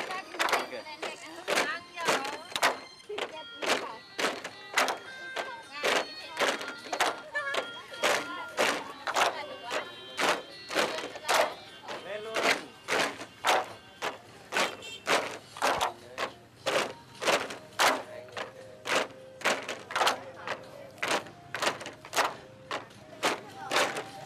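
Bamboo poles of a bamboo-pole dance (múa sạp) being clapped together and knocked on their base poles in a steady rhythm, about two knocks a second.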